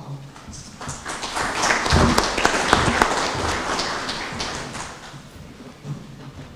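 Audience applauding: a dense patter of many hands clapping that builds up about a second in, is loudest around two to three seconds, then dies away.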